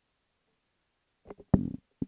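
Close-up noise on the lectern microphone: two short knocks about a second and a quarter in, then a louder, low thump-like rumble lasting about a quarter of a second.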